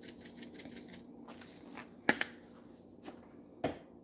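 Red pepper flakes shaken out of a spice shaker: a quick rattle of about seven shakes a second that stops about a second in, followed by two sharp clicks.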